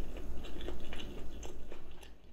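A person chewing a mouthful of food close to the microphone: an irregular run of mouth clicks and smacks, several a second.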